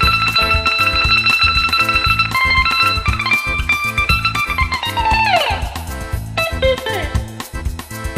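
Greek bouzouki played solo-style with fast tremolo picking on high sustained notes, then a quick falling run about five seconds in, over a steady low beat.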